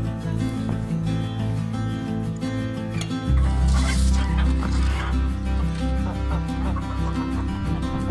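Background guitar music with a steady bass line runs throughout. About halfway through, a chicken calls briefly over it.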